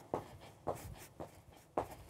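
Sneakers landing on a wooden floor in repeated calf jumps, faint short thuds about every half second.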